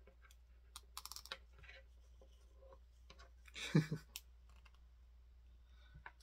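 Small plastic clicks of an action figure being handled as its head is pulled off and swapped, with a quick run of clicks about a second in and scattered single clicks after. A louder brief sound comes a little past halfway.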